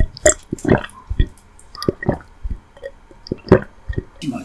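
Close-miked chewing: irregular wet, squishy mouth sounds of soft food being eaten, a few each second.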